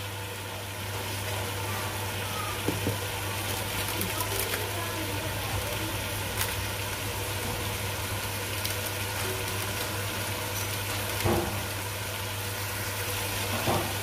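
Diced potatoes and spices sizzling steadily in hot oil in an aluminium pot, over a steady low hum, with a light knock about eleven seconds in.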